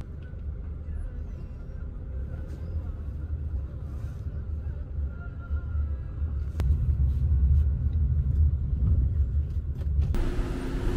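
Low rumble of idling and passing cars, growing louder about six and a half seconds in, with a single sharp click at that point.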